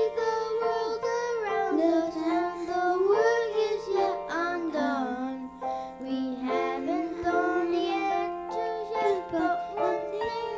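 Two young boys singing a slow song into microphones, backed by instrumental accompaniment, with held notes and gliding pitch.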